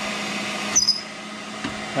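A vertical milling machine drives a worn ("smoked") carbide bit through a hardened-steel wedge, making a steady grinding hiss over the motor's hum. A little under a second in there is a brief high squeal as the bit breaks through. The cutting noise then drops away, leaving the machine's hum.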